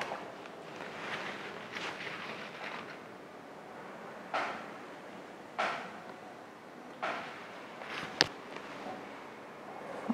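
Soft handling noises from painting at an easel: three brief swishes a little over a second apart and one sharp click, over faint room hiss.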